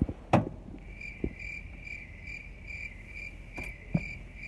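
A car's warning chime beeping steadily at a high pitch, about two and a half beeps a second, starting about a second in, as sounded when a door is open with the key in. A sharp knock comes just before it.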